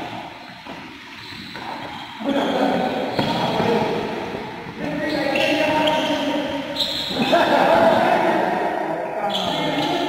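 Voices echoing in a large sports hall, over the hits of rackets on a shuttlecock during a badminton rally.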